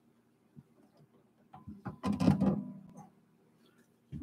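Hollow-body archtop guitar being handled and hung on a wall hanger: a few light clicks, then a clunk and rattle about two seconds in, with the strings and body ringing briefly after.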